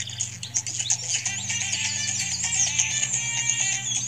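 Intro music: held low bass notes that shift every second or so, with high warbling chirps like birdsong above them.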